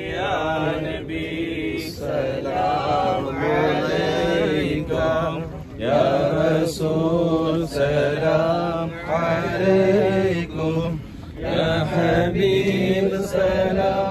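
Men's voices chanting an Islamic devotional chant in long melodic phrases, with brief breaks for breath.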